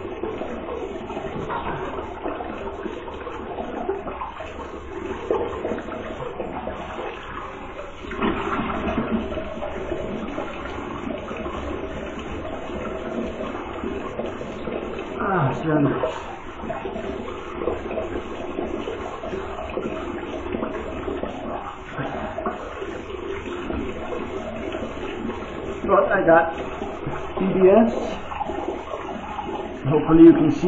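Bathroom tap running steadily into the sink while water is splashed onto the face for a post-shave rinse, with louder splashing about halfway through and again near the end.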